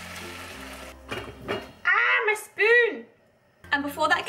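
Vegetables sizzling in a hot fry pan as vegetable stock is poured over them, the sizzle cutting off about a second in. A few light knocks of a spoon against the pan follow, then a short vocal sound with two rising-and-falling notes.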